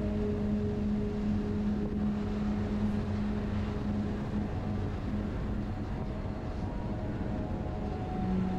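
BMW R1200RT's boxer-twin engine running steadily at cruising speed, with wind rushing over the camera microphone.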